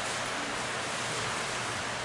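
Steady, even hiss of background noise with no distinct sounds standing out.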